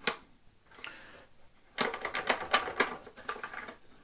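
Hard plastic clicking as a canister filter's black hose-connector fitting is handled and pushed onto the filter body: one click at the start, then a quick run of sharp clicks and taps over the second half.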